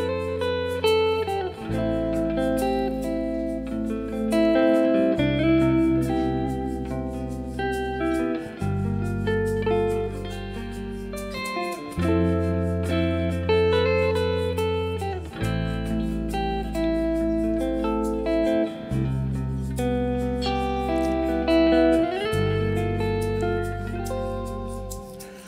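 Instrumental intro of a live band: electric guitar playing a melodic line with some sliding notes over a bass guitar holding one note per chord, the chords changing about every three and a half seconds.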